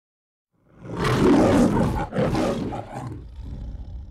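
The roar of the Metro-Goldwyn-Mayer logo lion, a recorded lion roar. It starts just under a second in, breaks briefly at about two seconds into a second roar, and trails off near the end.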